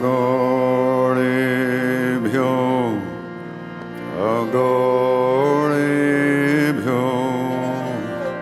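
Devotional Hindu chant music: long held notes that glide up or down in pitch at each change, over a steady low drone, with a softer stretch in the middle.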